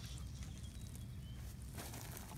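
Faint outdoor handling sound: rustling of dry grass and pine needles as a hand works at the ground, over a steady low rumble on the microphone. Two faint, short, high chirps come near the middle.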